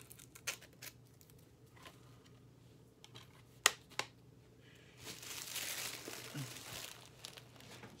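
Small clicks of a plastic DVD case being handled, with two sharp snaps a little before halfway, then clear plastic wrapping crinkling for the last three seconds.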